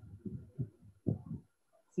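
A man's voice murmuring low, wordless sounds in two short stretches, the first lasting well under a second and the second about a second in.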